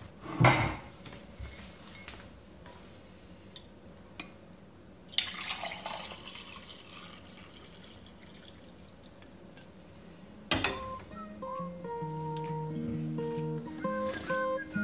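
Glass coffee carafe lifted off a metal stove grate with a clunk, then coffee poured from it into a mug about five seconds in; the carafe is set back down on the grate with a knock near the end, and music starts right after.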